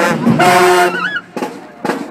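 Marching band brass holding a loud, sustained note that cuts off about a second in. Quieter voices follow, and a single sharp hit comes near the end.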